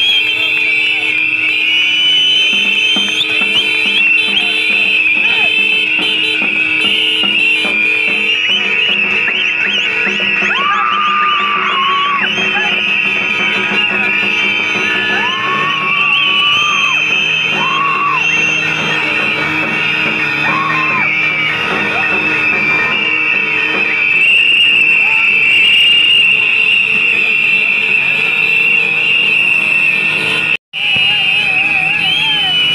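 A crowd blowing whistles together in one sustained shrill chorus, with some lower whistle notes sliding up and down about a third of the way in.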